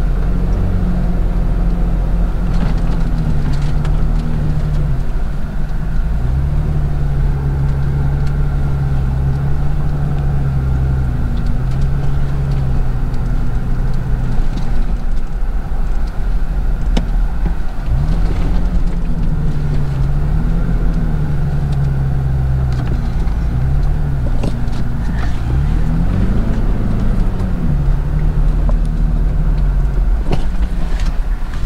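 Car engine and tyre rumble heard from inside the cabin while driving across desert sand. The engine's pitch rises and falls several times as the revs change, over a steady low rumble.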